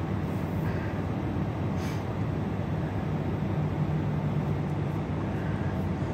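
Steady low mechanical hum and rumble, with a faint brief rustle about two seconds in.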